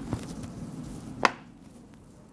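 Pens for an interactive display being set back into the plastic pen tray: a couple of short clacks, the sharpest just over a second in.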